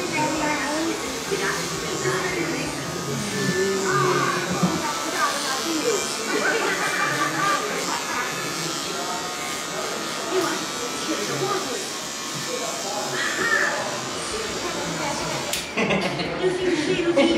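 Electric hair clippers running while trimming a small child's hair, with voices and music in the background.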